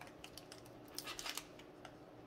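Faint crinkling and clicking of a foil Pokémon booster pack wrapper as fingers pick at it, trying to tear it open, with a few scattered sharp crackles.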